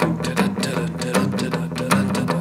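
Fender Telecaster electric guitar playing a rapid palm-muted rockabilly lick, hybrid-picked with pick and fingers near the bridge. A short slapback delay repeats each note, giving a quick, even chugging rhythm.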